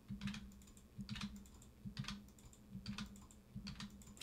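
Faint computer keyboard keystrokes and mouse clicks, in about five short bursts a little under a second apart, as the Ctrl+R shortcut is pressed repeatedly with a left and right mouse click after each press.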